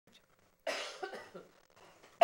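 A person coughing once: a sudden, harsh burst about two-thirds of a second in that trails off over roughly a second.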